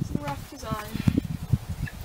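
Brief, quiet speech fragments from a person, with frequent low thuds.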